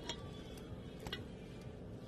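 A spoon stirring oats in a bowl, giving a few faint, light clicks as it knocks against the side.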